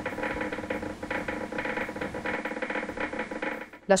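EMG machine's loudspeaker playing the signal from a concentric needle electrode at a motor endplate of resting muscle: irregular crackling of endplate spikes firing, a sound likened to oil sizzling in a frying pan. It cuts off abruptly near the end.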